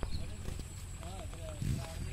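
Faint, distant voices of people outdoors, a few short utterances over low background noise.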